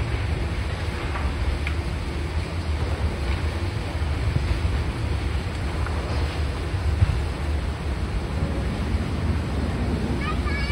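Wind buffeting the microphone in a steady low rumble, over the Tobu Skytree Train electric train running away along the tracks as it pulls out. A single short knock about seven seconds in.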